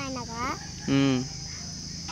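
Steady high-pitched chirring of insects in the background. Brief voices over it: a child's gliding vocal sound at the start, and a short, louder adult vocal sound about a second in.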